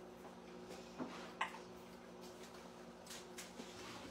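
Faint clinks and scrapes of a spoon working in a large pot of chicken and dumplings, with a sharper tap about a second and a half in, over a steady low hum.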